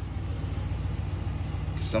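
Steady low hum of a vehicle's engine and road noise heard inside the cab while driving.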